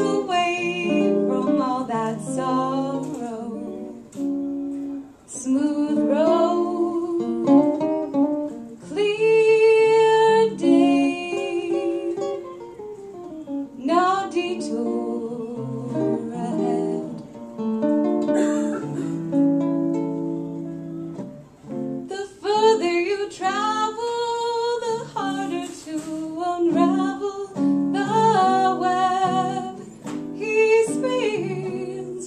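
A woman singing a jazz ballad in phrases, accompanied by a man playing a hollow-body jazz guitar through a small amplifier.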